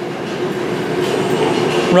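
RV rooftop air conditioner running, a steady rush of air from the ceiling vent with a steady hum underneath.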